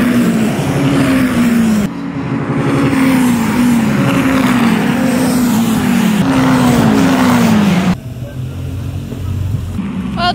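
Caterham Seven race cars passing at speed one after another, each four-cylinder engine note dropping in pitch as it goes by, about eight passes in quick succession. Near the end this gives way to a quieter, low engine rumble of a car moving slowly.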